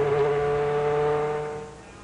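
An Indy race car's engine running at a steady high pitch, fading away about a second and a half in.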